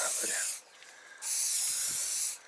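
Aerosol spray-paint can hissing in two bursts: the first stops about half a second in, the second starts just over a second in and runs on.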